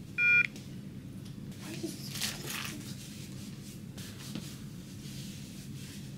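A single short electronic beep just after the start, then the soft rustle of a disposable cleansing wipe being rubbed over skin, about two seconds in.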